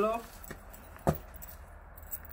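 A man says "Hello," then a single sharp click about a second in, over a faint steady low hum.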